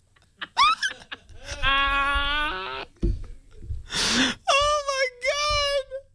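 Dog howling: a short rising yelp near the start, a long steady howl in the middle, a breathy gasp about four seconds in, then two long wavering howls near the end.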